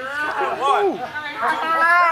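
Speech only: voices talking over one another, with a held, drawn-out call near the end.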